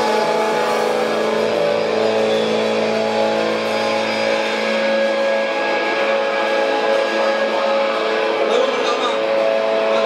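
Live band playing a slow, droning passage: electric guitar and keyboard hold sustained chords without drums, and a low bass note fades out about four and a half seconds in.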